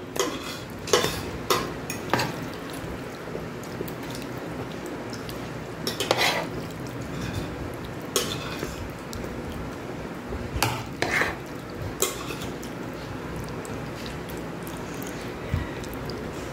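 A metal spoon scraping and knocking against a dish and a plastic container as sauced elbow macaroni is scooped and spread, in scattered short clinks and scrapes.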